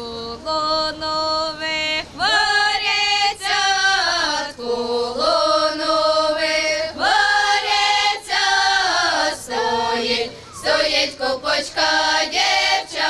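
A women's and girls' folk choir singing a Ukrainian folk song unaccompanied, several voices together in harmony, holding long notes and moving in steps phrase by phrase.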